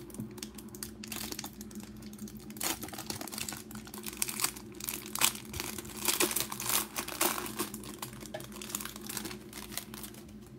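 Plastic wrapper of a basketball trading card pack being torn open and crinkled by hand, a run of crackling that is loudest in the middle.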